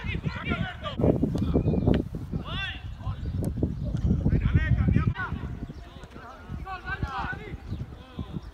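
Footballers' voices calling out on a training pitch over repeated low thuds and rumble, with a few sharp knocks of a football being kicked at goal in the first half.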